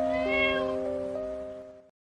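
A cat gives one short meow, rising and falling in pitch, over background music of steady synth-like notes that fades out near the end.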